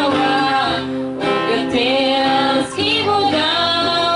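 Two women singing a song together over an acoustic guitar, held notes with brief breaks between phrases.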